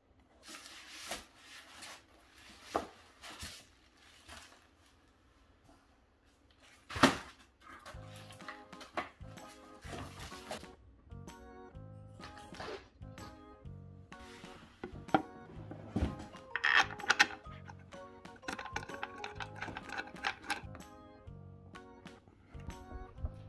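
Knocks, clicks and rustles of wooden kotatsu table parts and cardboard packaging being handled; background music enters about seven seconds in, with more knocks and clicks of the assembly over it.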